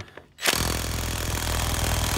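Impact wrench with a 42 mm socket hammering on a pitman arm nut, trying to break it loose. It starts about half a second in as a loud, steady rattle.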